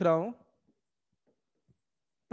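A man's voice finishing a short phrase, then near silence with a few very faint ticks as a stylus writes on a digital board.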